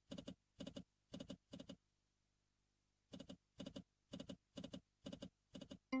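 Video slot game sound effects: reel-stop clicks landing one reel after another, about two a second, six in a row for a spin after a pause of about a second. Near the end a short chime sounds as a small win lands.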